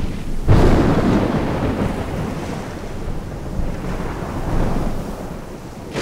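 Thunder in a film soundtrack: a sudden loud clap about half a second in that rolls on as a low rumble and slowly fades. A second, weaker swell of rumble comes near the end.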